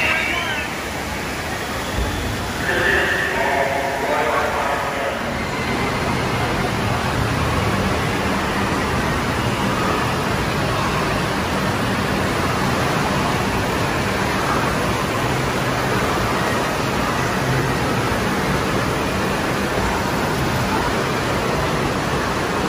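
Steady rush of running and splashing water in an indoor water park hall, under a din of children's voices and crowd chatter. A few raised voices stand out in the first few seconds, then the water and crowd noise go on evenly.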